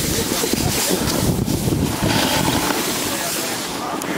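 Wind rushing over the microphone of a camera moving downhill on a snowboard run, a steady noisy rumble with the hiss of the board sliding over packed snow.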